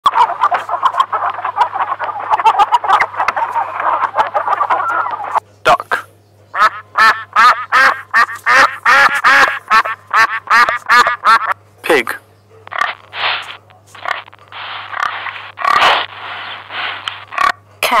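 Domestic ducks quacking: a dense overlapping chorus at first, then single quacks at about two to three a second, turning rougher and harsher in the last few seconds.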